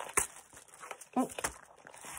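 Paper pages of a handmade embellishment binder being handled, with soft rustling and a few light clicks as a small embellishment comes off the page.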